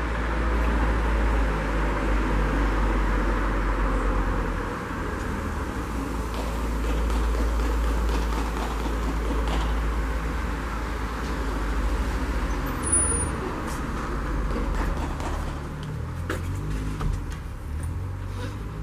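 Steady outdoor background rumble and hiss, with a few faint clicks in the second half.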